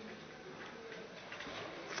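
Faint room tone of a large hearing room picked up through a desk microphone, with no clear event in it.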